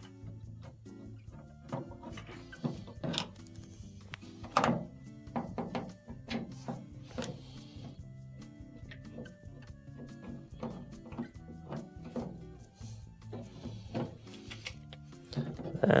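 Quiet background music, with scattered soft clicks and knocks of a screwdriver backing out Phillips screws from the plastic drain-pump access panel of a front-load washer.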